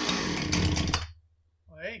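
Husqvarna 455 Rancher two-stroke chainsaw running on the bench, then cutting out abruptly about a second in; the saw has sucked a shop rag into its intake.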